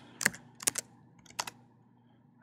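A few separate computer keyboard keystrokes, the last about a second and a half in.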